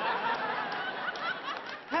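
Studio audience laughing, many voices together, easing off near the end.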